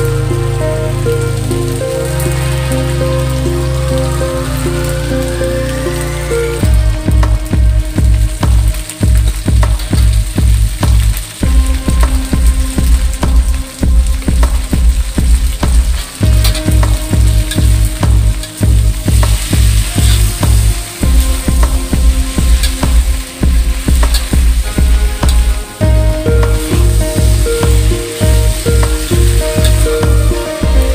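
Thick noodles and vegetables sizzling as they are stir-fried in a wok, turned with a metal spatula. Background music with a steady beat that comes in about six seconds in is mixed over the sizzle.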